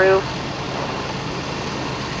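Fire engines' diesel engines running steadily while pumping water to the hose lines: an even rumbling hiss with a low hum underneath.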